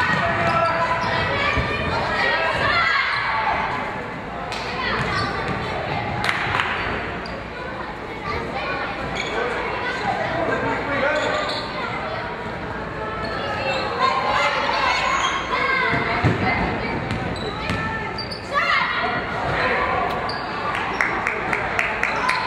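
Basketball bouncing on a hardwood gym floor amid indistinct voices of players and spectators in a large reverberant gym, with a run of quick bounces near the end.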